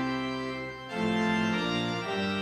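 Church organ playing held chords; the sound briefly thins just before a second in, then a new, fuller chord comes in.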